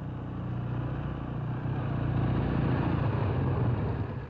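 A motorcade of police motorcycles and cars driving past, the engine and tyre noise growing louder to its loudest near the end.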